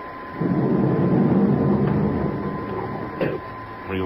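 A mechanical whirring sound effect from a radio drama starts about half a second in, swells, and fades away by about three seconds. It marks the move to the spaceship's cargo hold. A faint steady high whine from the recording runs underneath.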